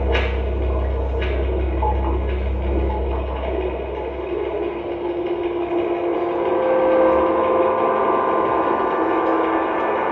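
Live experimental electronic music: a low drone fades out over the first few seconds, with a few sharp hits early on, and held tones swell in from about halfway through.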